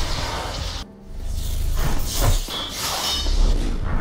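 Soundtrack of an animated fight scene: dramatic score mixed with whooshing and crashing effects, dipping briefly about a second in before building again.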